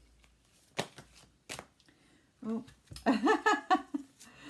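Hands shuffling a deck of oracle cards, with a few crisp card snaps in the first two seconds. From about halfway in, a woman's voice joins, louder than the cards.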